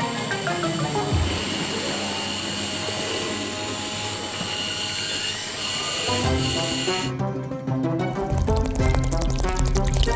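Background music over a motorised LEGO washing machine drum running and churning water, a steady whirr with a thin high tone that cuts off about seven seconds in. Near the end, water pours out of the machine's drain hose.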